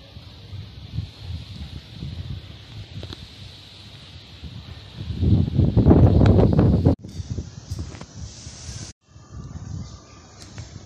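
Strong gusty wind rumbling on the microphone and rustling through a tree's leaves. It is loudest in a long gust about five seconds in, and the sound cuts off abruptly twice near the end.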